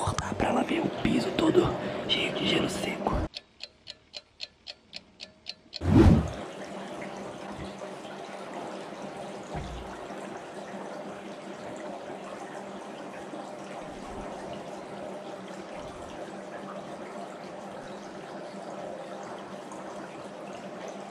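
Dry ice bubbling in pots of water, a steady low fizzing that runs from about six seconds in. Before it there are a few seconds of whispering, then a run of even ticks, about four a second, and one loud hit about six seconds in.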